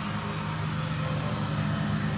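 Steady low background hum with no other events.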